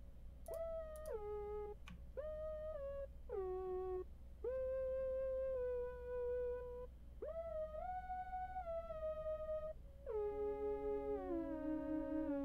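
Soloed synth lead playing a slow single-note melody of about seven held notes, each gliding up into its pitch (portamento), and ending in a stepped downward slide.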